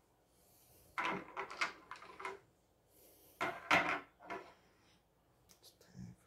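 Crystals and stones being handled on a wooden table: two clusters of clicks and knocks of stone against stone and wood, about a second in and again, louder, about three and a half seconds in, with a few light ticks near the end.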